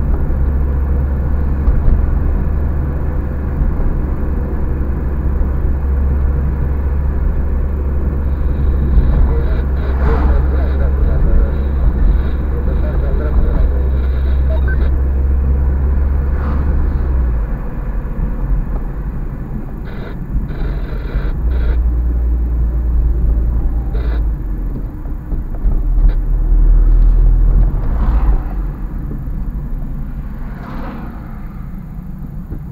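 Car cabin noise while driving on a city street: a steady low rumble of engine and tyres, changing in depth partway through and swelling near the end, with several short knocks from the car going over bumps.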